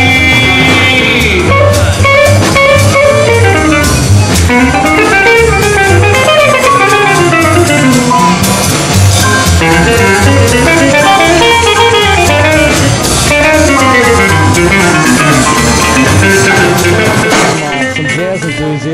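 Live small-group jazz: a guitar solo of single-note lines on a hollow-body jazz guitar, over upright bass and drum kit. A held high note sounds for the first second or so before the guitar line takes over.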